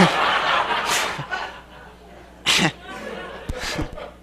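Audience laughter: a burst of mixed laughing that fades over about a second and a half, then two short breathy laughs near the end.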